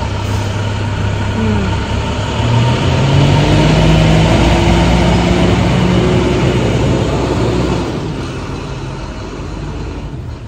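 Heavy truck engine running loud and close, its pitch rising a couple of seconds in, then dying away near the end.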